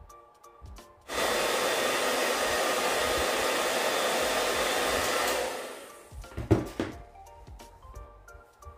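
Handheld hair dryer switched on about a second in, blowing steadily for about four seconds, then switched off and winding down. A short thump follows about a second later.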